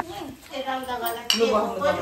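Tableware clinking as a small dish is handled and passed, with one sharp clink about a second and a quarter in.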